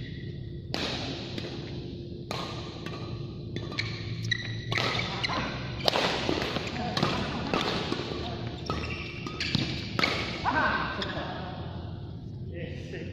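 Badminton rackets striking a shuttlecock in a doubles rally: a quick series of sharp cracks, thickest in the second half, each ringing briefly in a large hall.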